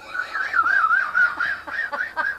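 A person making a high-pitched, warbling squeaky noise with the mouth, wavering up and down in pitch.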